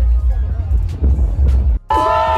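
Electronic dance music from a large festival sound system: a loud, heavy bass beat pulsing under the noise of a crowd. It cuts off suddenly near the end.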